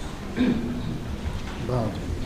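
Two brief, low spoken utterances, about half a second in and again near the end, over a steady background hiss of room noise.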